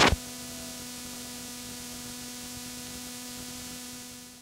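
A short double click, then a steady electrical hum with hiss underneath.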